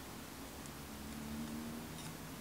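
Quiet room tone with a faint steady low hum and no distinct handling sounds.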